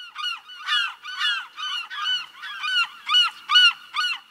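A flock of geese honking, many calls overlapping at roughly three a second.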